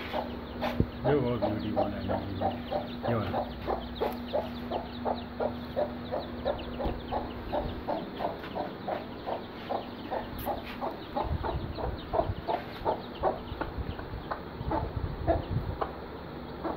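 A mother hen clucking to her chicks in a steady run of short clucks, about three to four a second.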